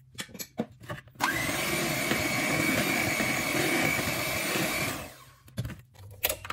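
Electric hand mixer switched on about a second in, running steadily with a whine while its beaters churn chocolate cake batter in a glass bowl, then winding down near the end. A few light knocks come just before it starts and again as it stops.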